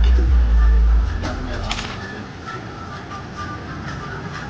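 Outdoor restaurant ambience: a deep low rumble for about the first second that then fades, a few sharp clinks near the middle, and faint voices in the background.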